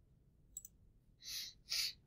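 A couple of faint computer mouse clicks about half a second in, then two short breaths close to the microphone.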